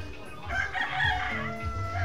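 A rooster crowing once, starting about half a second in: a rough onset then a drawn-out held note that sags slightly at the end. Background music with a low bass continues underneath.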